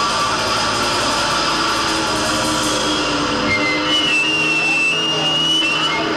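Loud live rock band led by electric guitar; the low, full sound drops away about three and a half seconds in, leaving a thin, high, slightly wavering whine ringing over the remaining noise.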